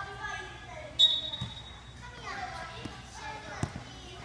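Futsal ball kicked by children on indoor turf, with dull thumps about one and a half seconds in and again near the end. About a second in comes the loudest sound: a sharp click followed by a brief high-pitched tone.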